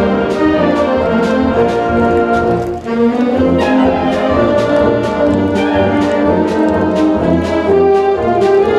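Concert band of woodwinds, brass with sousaphones, and percussion playing a loud, full passage, with regular percussion strokes and a brief break about three seconds in.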